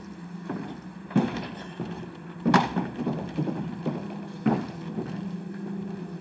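Three sudden knocks over a steady low hum, about a second, two and a half, and four and a half seconds in, the middle one loudest.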